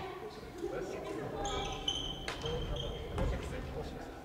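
Sports shoes squeaking on a wooden gym floor in several short squeals through the middle, with a few sharp clicks of rackets hitting shuttlecocks and voices echoing around a large hall.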